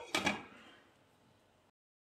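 A glass pot lid set down on the rim of a frying pan: a sharp clink just after the start, ringing briefly and dying away within the first second.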